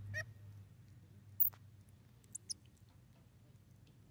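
Faint, short, high-pitched chirps and peeps from baby squirrel monkeys: one wavering call near the start and two brief very high peeps a little past halfway, with a single small click between them.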